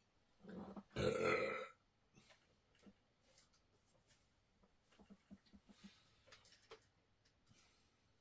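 A man's loud burp about a second in, a single belch lasting roughly half a second with a shorter, softer lead-in just before it. After it there are only faint clicks and a few low murmurs.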